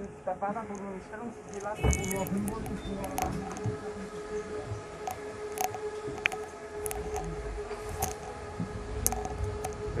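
Interior sound of a moving Stadtbahn light-rail car: passengers talking in the background and a thud about two seconds in, then a steady electric whine from the train with a low running rumble that grows toward the end.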